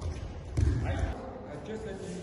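A dull, low thud on a martial-arts floor mat about half a second in, as a thrown partner lands and rolls out of an aikido throw, with a man's voice in the background.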